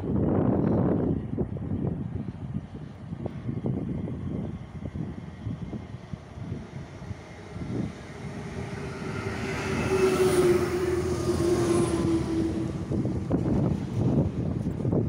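Electric RER commuter train approaching and pulling into the platform, its rumble building over the second half, with a steady tone that falls slightly in pitch for about three seconds near the end. Wind buffets the microphone at the start.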